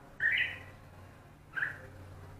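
Bulbul calling: two short, bright calls, the first about a quarter second in and the second near the end.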